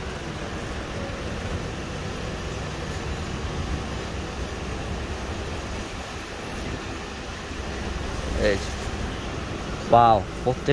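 Steady low background hum of a shop's room noise, with a brief voice about eight and a half seconds in.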